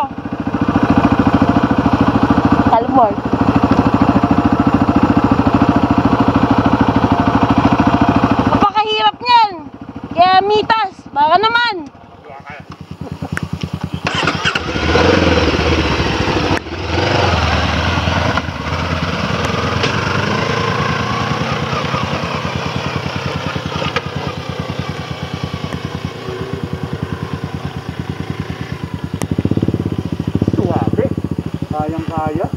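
Motorcycle engine idling steadily, with voices calling out briefly about nine seconds in; after a short lull the engine revs up and the bike rides off, running steadily under way.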